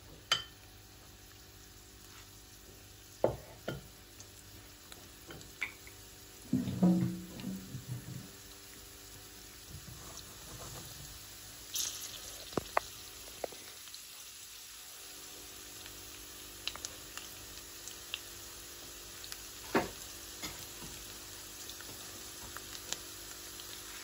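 Chopped garlic in olive oil in a nonstick wok, beginning to fry as the oil heats: a faint, steady sizzle with scattered small pops that grows slowly louder. A few sharp knocks stand out above it, the loudest about seven seconds in.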